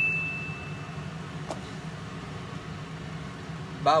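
A single high chime-like ding, a sound effect placed on each ingredient as it is named, fading away over the first second and a half, over a steady low hum.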